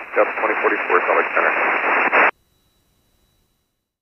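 A brief voice transmission over the aircraft's communication radio: thin, band-limited radio speech lasting about two seconds, cutting off abruptly.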